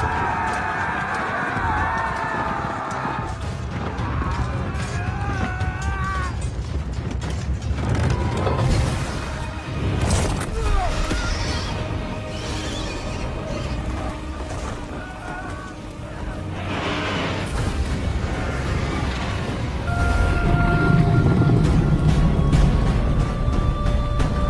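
Dramatic film-trailer music with deep booming hits and sound effects, growing loudest near the end.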